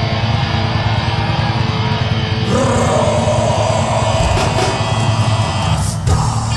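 Live rock band playing loudly, electric bass heavy in the low end under distorted guitar; the sound thickens and brightens about two and a half seconds in.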